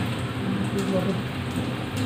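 Steady pattering of water, with voices talking faintly behind it.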